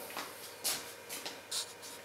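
A few faint, brief rustles and scuffs, about half a second apart, from a person moving up close: clothing brushing and shuffling.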